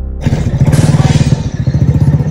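Motorcycle engine running with fast, even firing pulses. It grows louder about a quarter-second in.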